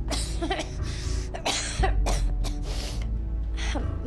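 A person coughing and clearing their throat several times in short breathy bursts, over background music with a steady low drone.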